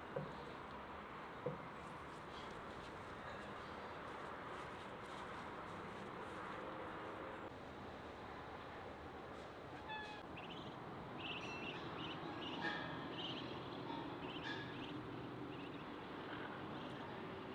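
Faint steady outdoor background with two short knocks in the first two seconds, then short high bird chirps from about ten seconds in.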